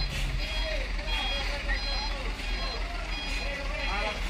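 A truck's reversing alarm beeping on and off about twice a second over a low diesel engine rumble, with people shouting.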